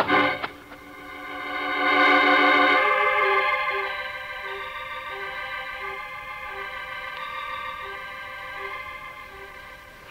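Organ music bridge, a dramatic sting for a man knocked unconscious by a blow: after a sharp crack at the very start, a held chord swells to its loudest about two seconds in. It then sustains over a low note that pulses about every two-thirds of a second, fading slightly toward the end.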